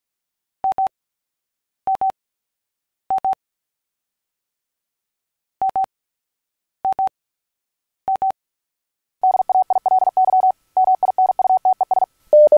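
A single steady beep tone keyed on and off like Morse code: six short double beeps in two sets of three, about a second and a quarter apart, then a fast run of Morse keying from about nine seconds in.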